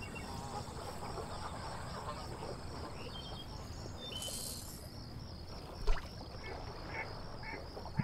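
Marsh ambience: ducks calling over a steady, evenly pulsing high-pitched chorus. A single sharp knock comes about six seconds in.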